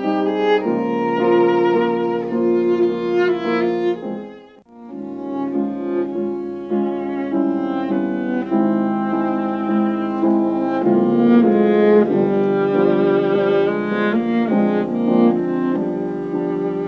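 Viola played with a bow in long, sustained melodic phrases with vibrato, with a short break in the sound about four and a half seconds in.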